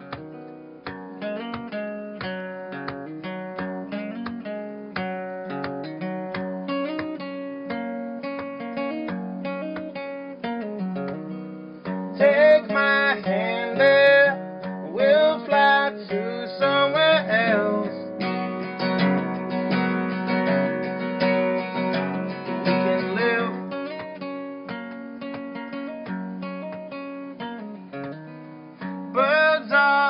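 Steel-string acoustic guitar fingerpicked as the instrumental intro of a folk song, with a louder middle stretch where some notes bend in pitch.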